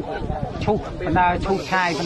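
A man speaking Khmer, with a short hiss near the end.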